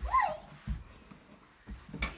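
A Basenji gives one short whine that rises and then falls in pitch, from inside its plastic crate as the door is shut. A few soft low thumps follow.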